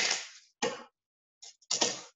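Handling noises of a plastic kitchen slicer and a cucumber: a sharp knock at the start that dies away over about half a second, then a few shorter knocks and rustles.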